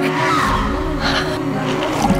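Trailer sound design: a loud noisy rush with a deep rumble coming in about half a second in, over a held low drone.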